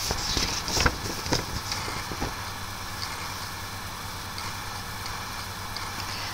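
A steady low electrical hum under quiet room noise, with a few faint rustles and clicks in the first two seconds as a sheet of paper is handled.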